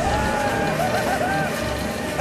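High-pitched anime character voices wailing, their pitch wavering up and down, over background music.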